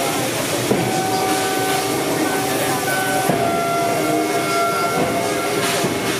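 Railway turntable turning a steam locomotive: a steady mechanical whine of several held tones over a constant hissing noise, with crowd chatter.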